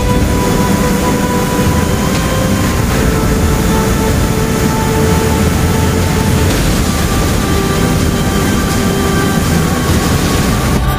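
Loud, steady roar of a large waterfall and rushing rapids, with music faintly underneath.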